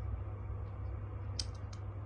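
Steady low background rumble, with a few faint short ticks about a second and a half in.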